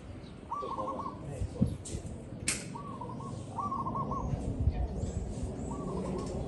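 Zebra dove cooing: four short phrases of soft rolling coos, each a quick run of three or four notes. A single sharp click comes about halfway through.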